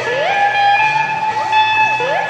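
Electric guitar lead holding a high note, bent up into it at the start and bent down and back up twice near the end, over a full rock band backing.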